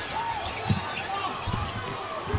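Arena game sound from a basketball game: steady crowd noise, with a basketball bouncing on the hardwood court in a few dull thumps.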